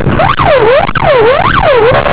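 Police patrol car siren in its fast yelp mode, pitch sweeping up and down three times in quick succession, with vehicle engine and road noise underneath: the patrol car signalling the car it is chasing to stop.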